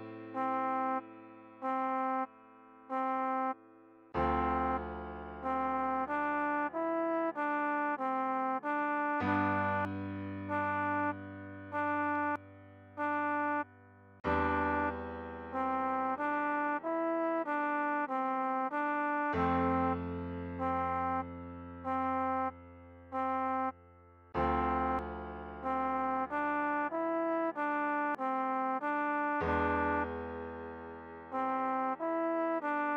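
Slow trombone melody of short repeated notes around middle C, over sustained piano chords that change about every five seconds. The tune is played at half tempo.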